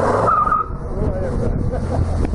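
Wind buffeting the microphone with a steady low rumble, and the voices of people talking in the background. A rush of noise in the first half second carries a short high squeak.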